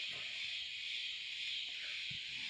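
Steady high-pitched insect chorus, an even drone that neither rises nor falls.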